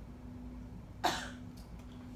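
A person coughing once, a short sharp cough about a second in.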